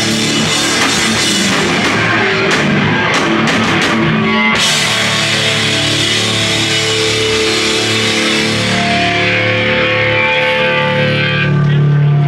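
A live heavy rock band plays loud distorted guitars over a full drum kit. About four and a half seconds in, the drumming drops out and the guitars ring on with sustained notes.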